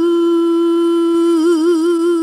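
Female singer's isolated lead vocal, with no accompaniment, holding one long sung note. It is steady at first, then wavers into vibrato about one and a half seconds in.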